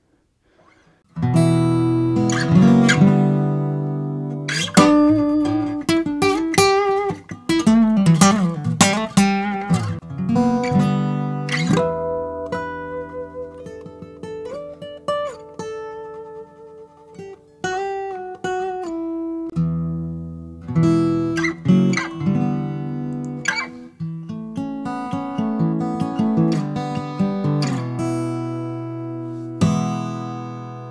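Steel-string acoustic guitar played fingerstyle, starting about a second in: a flowing picked passage of single notes and chords, ending on notes left ringing. It is recorded in stereo, with the small-diaphragm condenser placed at the 12th fret to pick up more of the strings' higher frequencies.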